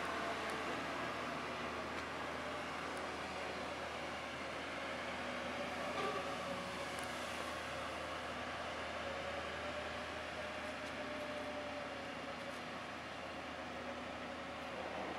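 Steady hum of engines at a distance, with a faint whine that drifts slowly in pitch, and one short click about six seconds in.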